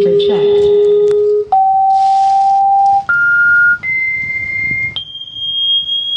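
A JBL loudspeaker playing a sequence of steady test tones that step up in pitch: five pure tones, each about a second long and each higher than the last, going from a low hum to a high whistle. The tones are being used to sound-test the amplifier board that drives the speaker.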